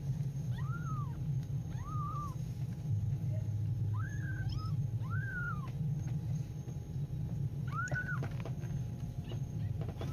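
Young kittens mewing: about six short, thin mews, each rising and falling in pitch, two of them close together just past the middle, over a steady low hum.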